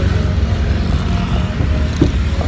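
Motorcycle engine running steadily under way, a low pulsing rumble.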